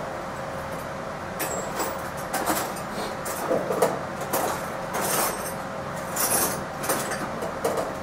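Objects being shifted around on a metal storage shelf: irregular rustles and knocks, about eight in all, over a steady background hum.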